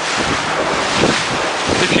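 Floodwater about a foot deep running through a concrete underpass, with wind buffeting the microphone: a steady rushing noise.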